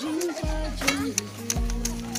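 Background music: held notes over a low bass line that changes pitch about once a second, with scattered sharp clicks.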